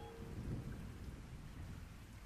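A faint, low rumble with a light hiss like rain, slowly fading, in the manner of a thunder-and-rain ambience at the close of a trip-hop track. The last held notes of the music die away at the very start.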